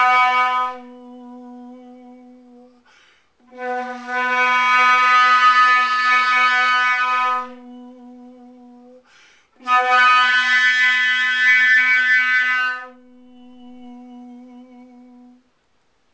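Eastman 420 sterling-silver flute played with a soft sung note behind it (throat tuning), one steady pitch throughout. Three times the bright flute tone sounds over the low hum for about three to four seconds, then drops out, leaving the gentle sung note on its own for a couple of seconds before a short breath gap.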